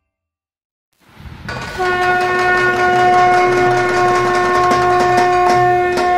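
A second of silence, then a train rumbles in and its horn sounds one long steady note over the clicking clatter of the wheels.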